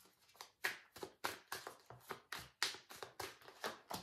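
Tarot cards shuffled by hand, a faint run of quick card snaps and taps, about five a second.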